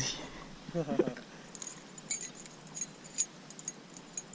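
Metal blades of a spinnerbait clinking and jingling in light, irregular ticks while a hooked wolf fish hangs from the lure and is worked off it by hand. A brief voice sounds about a second in.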